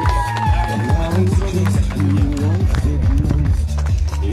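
Loud music with a steady beat and a bass line of held notes, with a gliding melody line near the start and voices mixed in.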